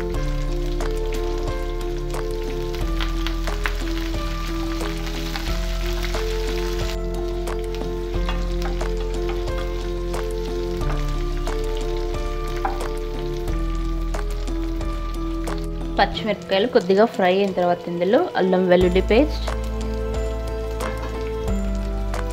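A tempering of green chillies, dried red chillies and freshly added curry leaves sizzling in hot oil in a nonstick pan. The sizzle is strongest for the first several seconds, then the mix is stirred with a spatula, all over background music.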